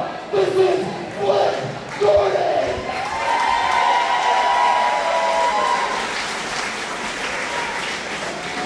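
A man's voice over the hall's PA for the first couple of seconds, then a crowd applauding and cheering, with a long drawn-out cheer rising over it a few seconds in.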